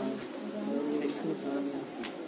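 A bird cooing in low, drawn-out notes.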